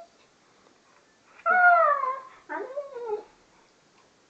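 Siberian husky giving two drawn-out vocal calls, the first about a second long and falling in pitch, the second shorter and wavering up and down.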